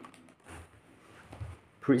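A near-quiet pause with two faint soft knocks, about half a second in and again near a second and a half in, as a hand presses the preset button on a Positive Grid Spark Go mini guitar amp to change presets.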